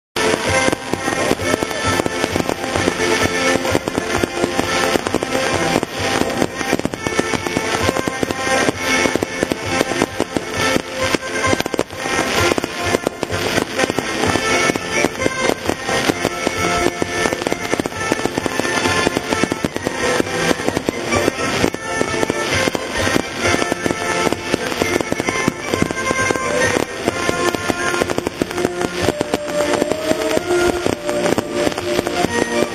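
Aerial fireworks bursting and crackling densely, mixed with continuous music.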